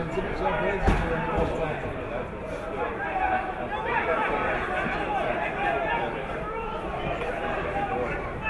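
Indistinct voices of spectators talking and calling out near the pitch side, with a single short knock about a second in.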